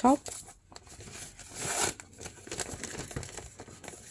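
Newspaper paper rustling and crinkling as a folded paper gift bag is handled, with a louder, longer swish about a second and a half in.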